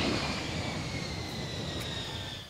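Jet-plane fly-by sound effect: a steady rush of jet noise with a high whine that falls slowly in pitch.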